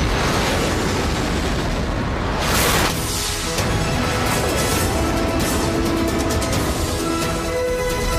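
Sound-effect explosion of a blast charge, a dense noisy blast that peaks about two and a half to three seconds in, mixed with dramatic soundtrack music. The music carries on alone through the second half.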